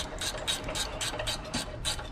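Hand ratchet wrench clicking in quick, even strokes, about five a second, as a bolt on the front steering knuckle is worked.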